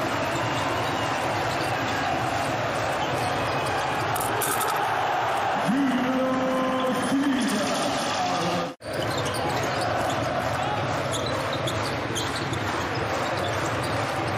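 Basketball arena ambience: steady crowd noise with a basketball being dribbled on the hardwood court. About six seconds in, a sustained voice-like tone rises, holds for under two seconds and falls away. A little later the sound drops out for an instant at an edit.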